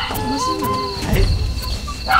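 Crickets chirping in a steady pulsing trill, with a soft held tone that glides in pitch beneath it.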